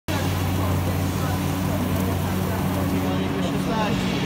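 Steady low hum of sausage-production machinery running on the factory floor, with voices faintly beneath it toward the end.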